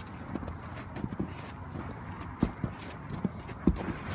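Footsteps on a snowy, gravel-covered flat roof: an uneven run of crunches and knocks, with two louder thuds after the middle.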